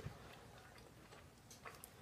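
Near silence, with a few faint mouth clicks in the second half, from chewing a piece of dark chocolate.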